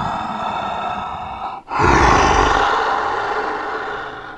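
Monster roar voiced for a giant killer-clown character: a long roar that breaks off about one and a half seconds in, then a second, louder roar that slowly fades.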